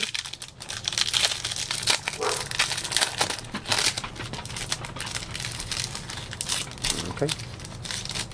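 The foil wrapper of a Panini Donruss Optic basketball card pack crinkling as it is torn and peeled open by hand: a dense, irregular run of sharp crackles that goes on throughout.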